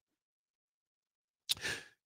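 Dead silence for about a second and a half, then a man's short breath in at the microphone just before he speaks.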